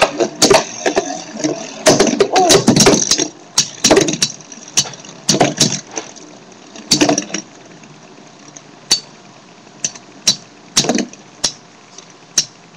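Two Beyblade Metal Fusion spinning tops battling in a small plastic stadium: sharp clacks as the metal-wheeled tops strike each other and the arena wall. The clacks come thick and fast for the first few seconds, then thin out to single knocks every second or so as the tops lose spin.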